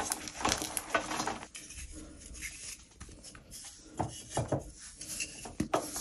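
Blocks of gym chalk crumbling and crunching between gloved hands over a wire rack, with chunks pattering onto the mesh. Dense crackling for the first second and a half, then quieter, with a few scattered crunches.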